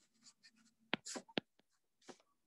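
Stylus tapping and sliding on a tablet's glass screen during handwriting: a few faint, short strokes, the sharpest taps coming about a second in.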